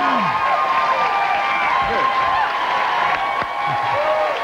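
Studio audience applauding and cheering, with sustained whoops over the clapping, as a guest walks on.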